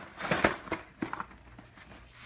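Cardboard Lego set boxes being handled and set down on the floor: a few light knocks and rustles in the first second or so, the first the loudest.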